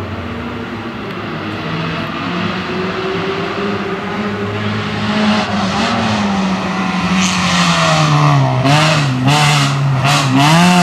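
A Renault Clio race car's engine approaches under hard throttle and grows steadily louder. Over the last few seconds its pitch swings up and down again and again as the throttle is lifted and reapplied through the slalom cones.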